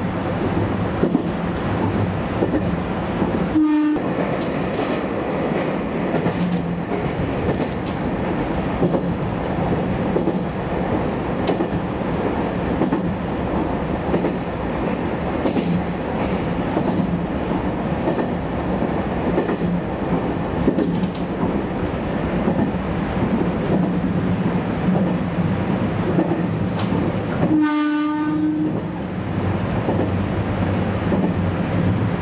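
JR Kyushu YC1-series hybrid diesel railcar running, heard from the driver's cab, with rail-joint clatter and a steady low hum from its drive. The horn gives a short toot about three and a half seconds in and a longer blast near the end as the train nears a level crossing.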